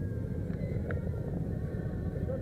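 A motorcycle engine rumbling steadily at low speed. Faint voices and one short click about a second in sit over it.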